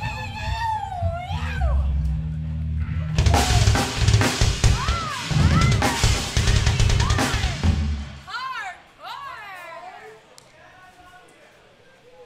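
Loose, irregular hits on a live drum kit, snare, kick and cymbals, played between songs over a low held bass note that cuts off about eight seconds in, with scattered shouts; the stage then goes quiet.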